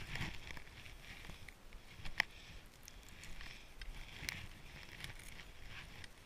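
Skis hissing through deep powder snow in soft swells, with a couple of sharp clicks.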